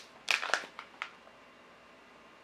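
Short crinkling of a tea pouch being handled: a few quick crackles within the first second.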